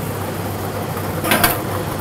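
Three-chamber lottery ball machine running, with a steady rushing noise as the balls tumble in its clear mixing chambers. A brief burst of sharper ball clatter comes about a second and a half in.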